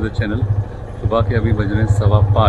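Motorcycle engine idling with a fast, even low beat, most likely the rider's Yamaha FZ25 single-cylinder.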